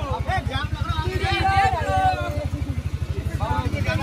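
A small vehicle engine running with a rapid, steady chug, heard from a passenger seat, with people talking over it.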